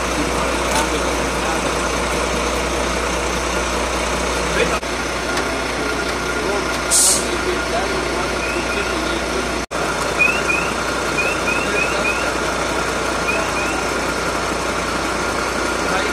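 Steady running of an idling heavy vehicle's engine, with a short hiss of air about seven seconds in and short high chirps, mostly in pairs, through the second half.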